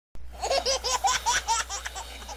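A little child laughing: a quick, high-pitched run of short ha-ha sounds, about six a second, starting just after the start.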